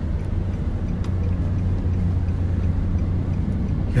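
Steady low rumble of a moving car heard inside its cabin: engine and road noise while driving along.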